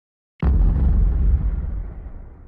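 GoPro logo intro sting: a sudden deep boom about half a second in, rumbling low and dying away over the next two seconds.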